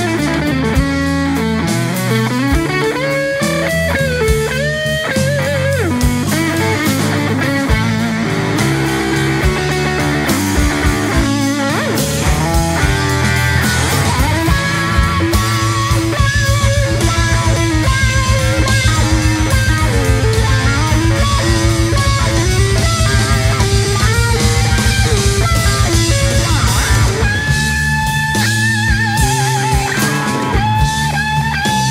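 A live blues-rock trio plays an instrumental stretch of a slow twelve-bar blues: an electric guitar solo through a Marshall amp, with bent notes, over bass guitar and drums. About halfway in, the bass and drums drive harder with a fast, even pulse and the band gets a little louder; this eases near the end.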